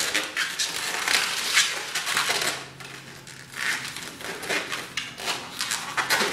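A long latex modelling balloon being twisted and squeezed by hand, its rubber surfaces rubbing together in a run of irregular squeaky rasps.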